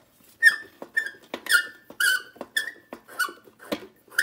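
A 70 W high-pressure sodium bulb being unscrewed from its lamp socket, squeaking in about seven short, high chirps, one with each twist, each dropping slightly in pitch.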